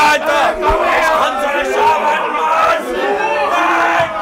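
Several men shouting and hollering together, their voices overlapping.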